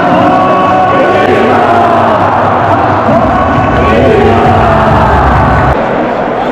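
Music in a packed football stadium with the crowd singing along in long held notes. A low rumble builds about halfway through, and the sound drops off just before the end.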